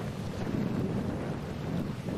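Light wind buffeting the microphone: a steady low rumble.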